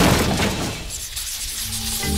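A sudden crash at the start, its noisy tail fading over about a second, with background music.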